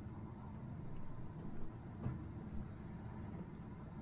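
Vehicle engine and tyres heard from inside the cab while driving slowly over a grass field: a steady low rumble with a couple of faint knocks about two seconds in.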